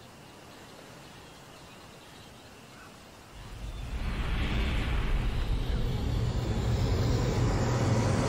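Faint steady background hiss, then about three seconds in a low rumbling noise swells up and grows loud.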